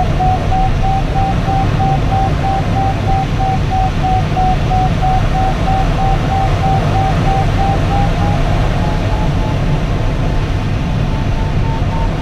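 Steady rush of airflow in a glider cockpit, with a continuous electronic variometer tone whose pitch creeps slowly upward and steps higher about two-thirds of the way through. On a variometer a rising pitch signals a stronger climb.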